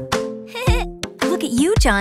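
Bouncy children's-song backing music with a steady drum beat, over which a cartoon toddler giggles in a wavering voice.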